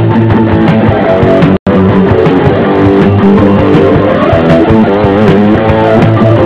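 Rock band playing live: electric guitars over bass guitar, with no vocals in this passage. The sound cuts out completely for a split second about a second and a half in.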